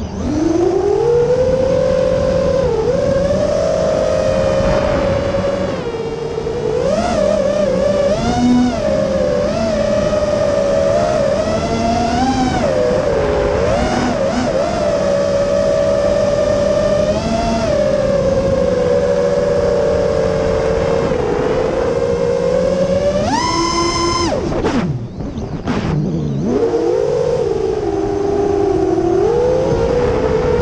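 FPV racing quadcopter's brushless motors (MCB Primo 2207, 2450 kV) spinning 6x4.5 tri-blade props, whining in a pitch that rises and falls with the throttle. About two-thirds through, a sharp punch to a much higher whine, then the pitch drops off briefly before it picks up again.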